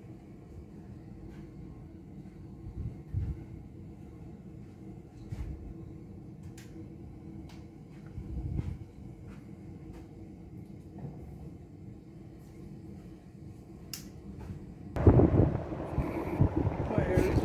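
A steady low rumble with a faint hum and a few soft clicks. About a second before the end it gives way suddenly to loud wind buffeting the microphone.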